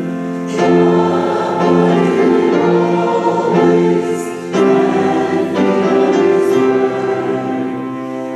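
A hymn sung by a small church choir and congregation, in phrases of held notes with short breaks about half a second in and again around four and a half seconds in.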